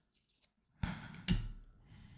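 A trading card sliding across the cards of a small hand-held stack as it is moved to the back, a short soft scrape about a second in, followed by a second brief soft sound.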